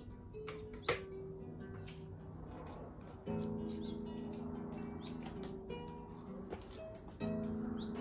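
Acoustic guitar playing: single plucked notes, with fuller chords strummed about three seconds in and again about seven seconds in. A sharp click sounds about a second in.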